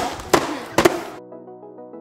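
Gift-wrapped box being handled and its wrapping paper torn, with two sharp sounds. A little past halfway the live sound cuts off abruptly to soft background keyboard music.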